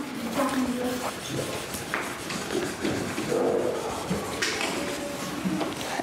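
Young children in a classroom talking quietly among themselves while they work, with scattered short voices and a few light taps.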